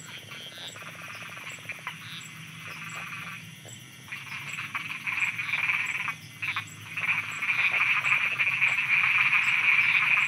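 Chorus of many frogs croaking at night, a dense pulsing trill that swells louder about four seconds in and again a few seconds later. A faint high tick repeats at even spacing, a little more than once a second.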